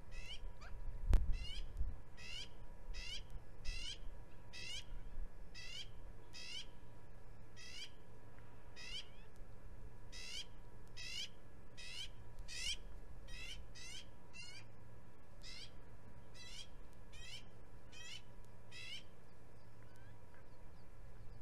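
A bird calling over and over: a short, falling note repeated steadily about every two-thirds of a second. There is a single dull low thump about a second in.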